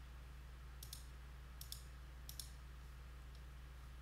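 Computer mouse buttons clicking: three quick press-and-release clicks a little under a second apart, then a fainter tick, over a faint steady low hum.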